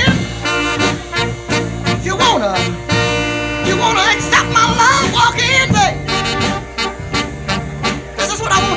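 Live soul band playing: a drum beat under held chords, with a bending melodic lead line over the top.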